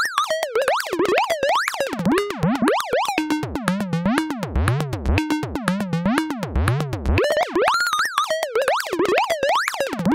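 Electronic beat from a software synthesizer, a bit-synth patch ('Airy Mello Bit Synth') playing a piano-roll sequence. Its pitches glide up and down in repeating arcs over low notes that come and go.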